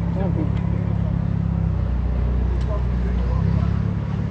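A motor vehicle engine running nearby, a steady low hum that shifts slightly in pitch partway through, with faint voices in the background.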